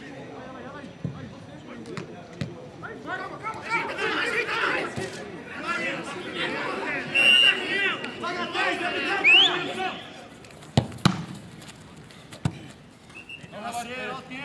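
Footballers calling and shouting to each other during a passing drill, several voices overlapping. Then two sharp thuds of a football being struck, one about eleven seconds in and one near the end.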